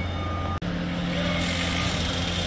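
Steady low machinery hum with a constant drone, broken by an abrupt cut about half a second in, after which the hum carries on.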